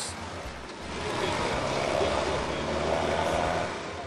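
A motor vehicle passing close by on an asphalt road: tyre and engine noise over a steady low hum, swelling from about a second in and fading away near the end.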